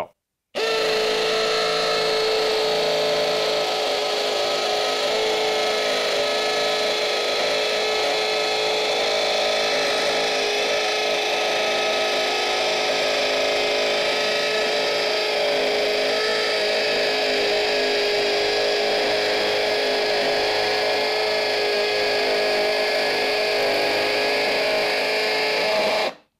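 Milwaukee Fuel cordless hammer drill running in hammer mode on speed two, boring a half-inch hole into a concrete block with a masonry bit. It runs at a steady pitch and level, starting about half a second in and cutting off suddenly at the very end.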